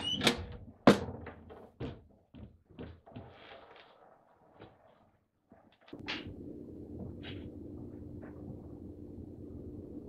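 A front door being unlatched and opened: crisp latch clicks about six and seven seconds in over a steady low room hum. Before that, a sharp knock about a second in and a few faint scattered knocks on near silence.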